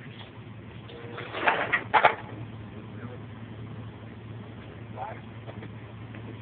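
Flatbed tow truck's engine running with a steady low hum, with two louder short sounds about one and a half and two seconds in.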